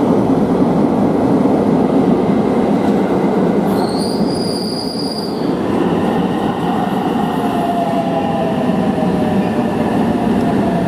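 Electric train running close along a platform, with a dense rumble of wheels and running gear. About four seconds in, a high squeal is held for a second and a half. From about six seconds, several steady squealing tones slowly drop in pitch as a train rolls in over the points.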